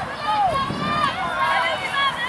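Several people shouting and calling out at once, their raised voices overlapping.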